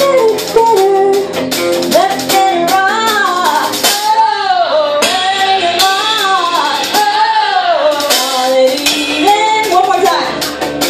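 A woman singing a melodic line with vibrato into a microphone over a live band: Nord Stage keyboard and light percussion.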